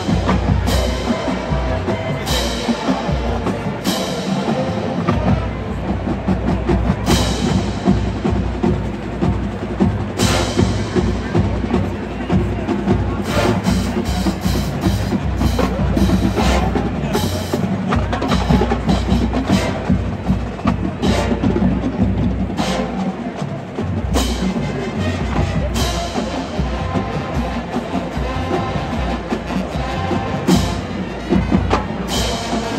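Marching band playing: a brass section with a drumline of bass drums and cymbals, with cymbal crashes recurring through the piece.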